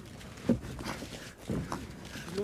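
Two dull thuds about a second apart: punches landing during ground fighting, over a low steady background hum.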